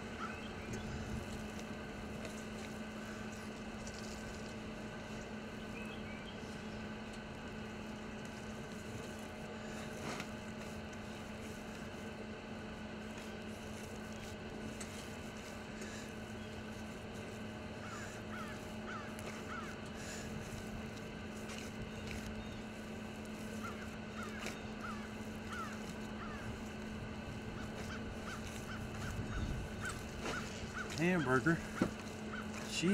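Steady low hum under outdoor background noise, with faint bird calls in short clusters about 18 seconds in and again about 24 seconds in.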